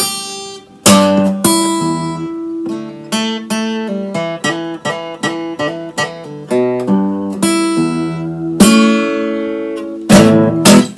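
Steel-string acoustic guitar playing an E blues lick in standard tuning: loud strummed chords about a second in and again near the end, with a run of quicker single picked notes between them.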